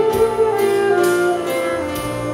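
Saxophone playing a falling melodic phrase over backing music, an instrumental fill between sung lines.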